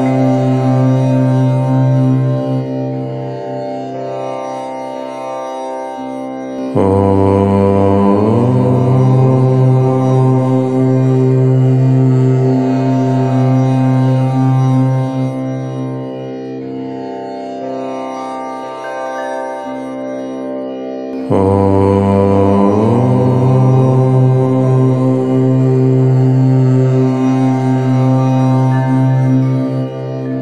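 A voice chanting Om, each syllable held for about fourteen seconds on one steady low pitch. A new Om begins about seven seconds in and another about twenty-one seconds in. Each opens on the vowel, which shifts and then settles into a quieter closing hum.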